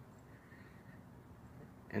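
Faint, steady room tone with no distinct sound.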